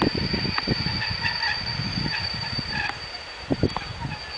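EU07 electric locomotive's horn sounding one long blast of a little under two seconds, starting about a second in: the Rp1 'attention' signal. Low rumbling from the approaching train runs underneath.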